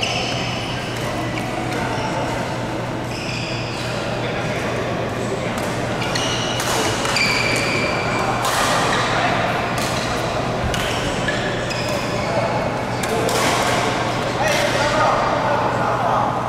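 Badminton rally in a large echoing sports hall: rackets striking the shuttlecock with sharp cracks at irregular intervals, and short high squeaks from shoes on the court floor.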